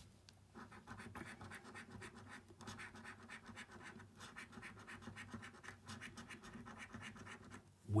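A coin scraping the scratch-off coating off a paper scratchcard in quick repeated strokes, starting about half a second in and stopping just before the end.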